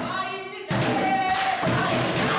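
A drum thump, then a group of voices starts singing together about two-thirds of a second in, holding a steady note.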